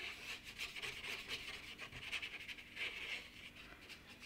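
Paintbrush stroking wet paint across paper: faint, repeated soft scratching of the bristles.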